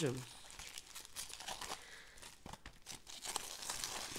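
Faint crinkling of plastic wrap on a trading-card hobby box as gloved hands handle it, with a few small taps and clicks scattered through.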